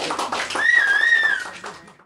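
A person whistling one loud note lasting about a second. It starts with a quick upward slide, then holds with a slight dip in pitch, over scattered hand claps. The sound fades out near the end.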